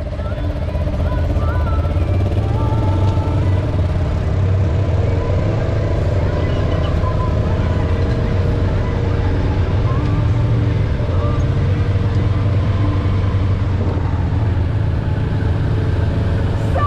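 Off-road side-by-side UTV engines running with a steady low drone, with faint voices in the background.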